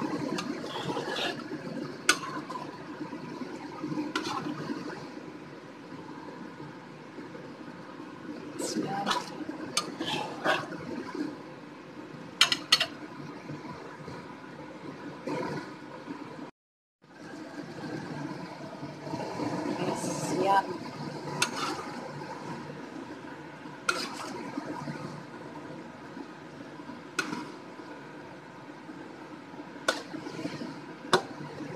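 Thick, creamy chicken curry simmering in a pot, a steady bubbling hiss broken by scattered pops and clicks. The sound cuts out for a moment a little past halfway.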